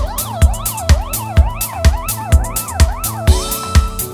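Electronic dance music with no vocals. A steady kick drum beats about twice a second under a siren-like synth line that glides up and down over and over, and a rising noise sweep builds near the end.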